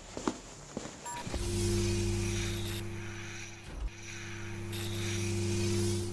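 Sci-fi sound effect: a few footsteps, a short electronic beep about a second in, then a steady mechanical hum with a high hiss over it that holds for about five seconds, with a brief dip in the middle.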